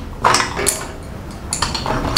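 Small stationery items such as pencils and a sharpener being put into a pencil case, giving light clicks and knocks. A few come in quick succession near the end.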